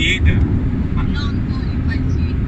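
Car cabin noise while driving: a steady low rumble of engine and tyres on the road, with a few brief faint voice fragments over it.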